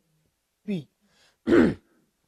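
A man clears his throat once: a short, harsh burst, louder than his speech.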